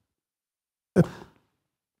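Silence, then about a second in, a man's single short sigh: a brief voiced start that trails off into breath.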